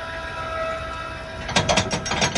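Electric tongue jack motor on a travel trailer running with a steady hum as it raises the hitch. About one and a half seconds in, a rattle of metal clicks: the steel weight-distribution spring bar knocking in its bracket as it is shaken, a sign that its tension is off.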